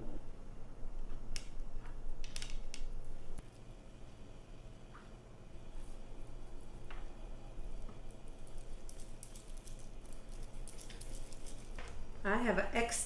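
Soft handling sounds of hands shaping bread dough on a wooden counter and baking sheet: scattered light clicks and taps, more frequent near the end, over a steady low hum.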